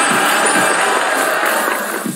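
A loud, dense, glittering sound effect from the live-streaming app, of the jingly kind that goes with a gift or milestone animation, laid over pop dance music; it cuts off at the end.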